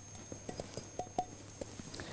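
A spatula scraping and tapping against a glass mixing bowl as crumbly biscuit-crust mixture is emptied out. It makes an irregular run of light clicks, several with a short ringing clink.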